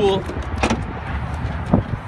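Rear liftgate of a Ford Focus hatchback being unlatched and lifted open: a sharp latch click under a second in and another click near the end, over a steady low rumble.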